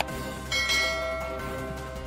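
A bell chime sound effect strikes about half a second in and fades away, over steady background music.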